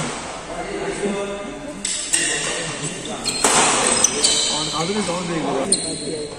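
Badminton rally in a large indoor hall: several sharp racket strikes on the shuttlecock, with players' voices calling out and echoing in the hall.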